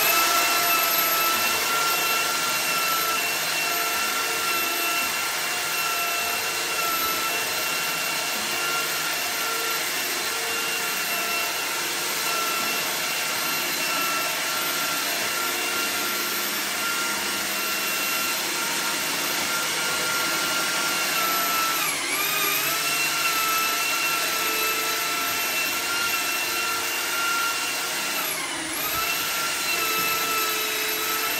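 Cordless drill spinning a drum-type drain-cleaning machine, feeding its spring cable into a clogged kitchen sink drain: a steady high motor whine that dips briefly in pitch twice near the end.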